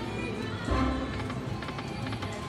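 Gold Bonanza video slot machine playing its electronic spin music and reel sounds as the reels spin, with a run of quick clicks and a louder low thump about two-thirds of a second in.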